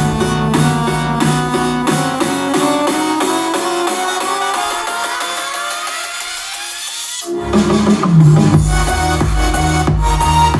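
Electronic dance track played loud through a JBL Xtreme 2 portable Bluetooth speaker. About two seconds in, the bass and beat fall away under a rising sweep that builds for about five seconds. Then the heavy bass and beat drop back in suddenly.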